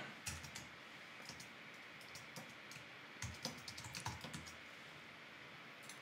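Faint computer keyboard typing: short runs of keystrokes with pauses between, the longest run about halfway through.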